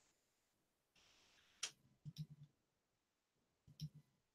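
Near silence broken by a few faint clicks and taps: a sharp click a little past one and a half seconds in, a quick run of soft taps just after two seconds, and a couple more clicks near the end.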